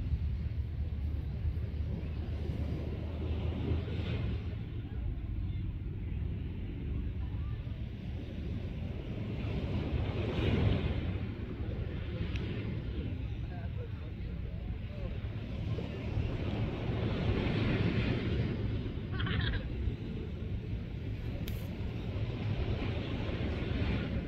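Small waves washing onto a sandy beach, the wash swelling and fading every several seconds, over a steady low rumble of wind on the microphone.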